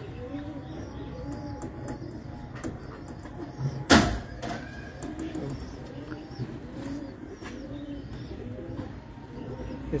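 Domestic pigeons cooing in a steady run, about two coos a second, with a single sharp knock about four seconds in.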